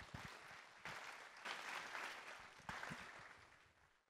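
Audience applauding, faint, dying away about three and a half seconds in.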